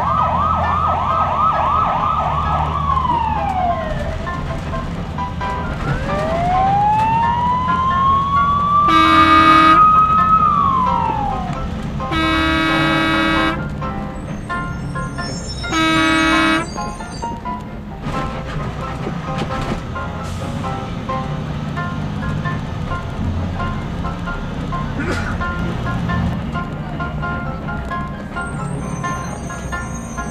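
Added cartoon sound effects over background music: a warbling siren-like tone for the first few seconds that slides down, then a long rising glide, then three horn honks of different lengths.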